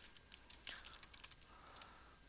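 Faint computer keyboard typing: a quick, irregular run of keystrokes.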